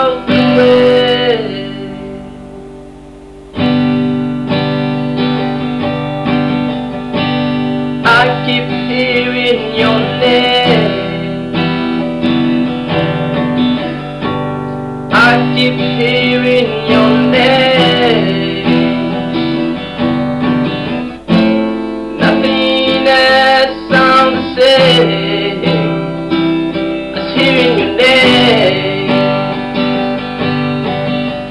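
Acoustic guitar strummed in steady chords, with a man's voice singing in phrases between stretches of guitar alone. The playing dies away briefly a couple of seconds in, then the strumming starts again.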